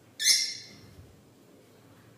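A pet parrot gives one short, loud, shrill call about a quarter second in, lasting about half a second.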